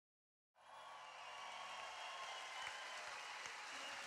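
Faint audience applause, steady, fading in after a brief silence at the very start.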